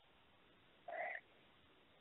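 Near silence: a pause in the speech, with one faint, brief sound about a second in.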